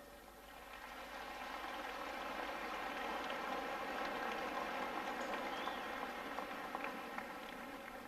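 Concert-hall audience applauding: the clapping swells over the first few seconds, holds, then dies away near the end.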